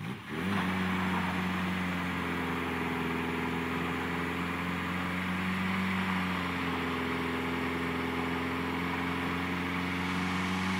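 Mitsubishi Sigma wagon's 2.6-litre Astron four-cylinder engine revved hard just after the start and held at high, steady revs for a burnout, with a brief dip in pitch about six seconds in and a steady rushing noise over it. This is the engine the owner says is too weak to do a proper burnout.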